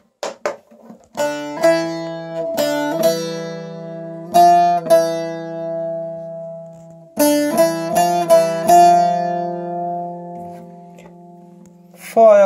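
A bağlama (saz) played solo: the hicaz phrase re–mi–fa–mi–fa plucked note by note over ringing open strings. The phrase is played twice, the second time starting about seven seconds in, and the last notes ring out and fade near the end.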